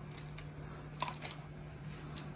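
Slotted metal spatula scooping soft cake out of a foil baking pan into a plastic cup: a few faint clicks and light scrapes, with one sharper click about a second in, over a low steady hum.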